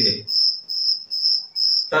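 A cricket chirping steadily in the background, a high, even pulse of about two to three chirps a second.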